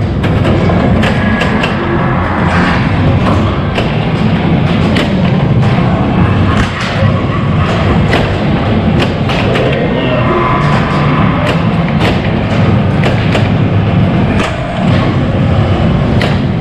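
Stern Spider-Man pinball machine in play: frequent irregular knocks and thuds from the flippers and the ball striking playfield targets, over the machine's music and sound effects.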